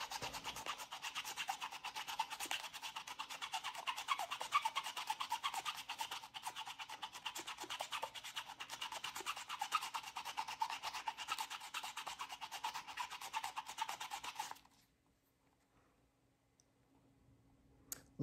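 Small wood-backed cleaning brush scrubbed quickly back and forth over a suede shoe upper, a steady run of rapid rubbing strokes. It stops suddenly about fourteen and a half seconds in, leaving near silence.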